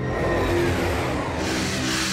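Cartoon sound effect of a futuristic train speeding through a tunnel: a steady low hum under a rushing noise that swells louder toward the end as the train approaches.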